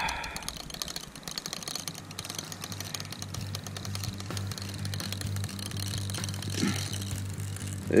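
Fishing reel clicking rapidly and continuously as a hard-fighting fish is played on the rod. A steady low hum with an even pulse comes in about a second and a half in.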